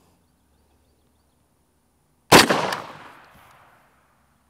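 A single shot from a semi-automatic M1 carbine firing a 110-grain .30 Carbine ball round, a little over two seconds in; the report dies away over about a second and a half.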